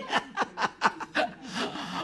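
A man chuckling close to the microphone: a quick run of short laughs that trails off into a breathy laugh near the end.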